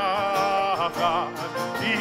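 A man singing long held notes that waver about a second in, over a strummed acoustic guitar.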